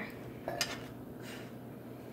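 Pokémon cards and a foil booster pack being handled, with a short crinkle about half a second in and a fainter one just after a second, over quiet room tone.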